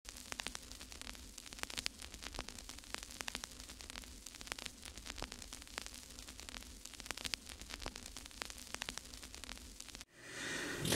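Faint crackling static: a soft hiss full of irregular sharp clicks, several a second, over a low steady hum.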